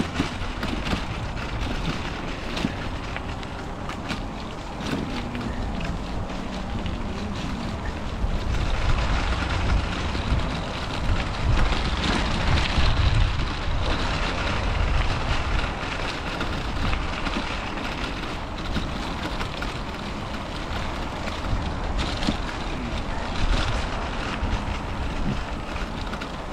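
Wind buffeting the microphone of a bike-mounted camera on the move, over the steady rolling of bicycle tyres on a dirt and gravel path. The noise grows brighter and louder for several seconds around the middle.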